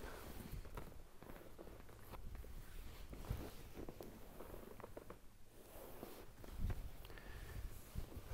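Faint rustling and a couple of soft low thuds from a leg being handled and moved on a treatment couch, over quiet room noise.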